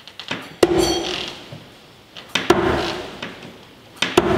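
Steel throwing knives striking and sticking in a wooden log-slice target, twice, about two seconds apart. Each strike is a sharp hit followed by a short metallic ring from the blade.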